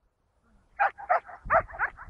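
A dog's short, high yelps, about five in quick succession, starting near a second in.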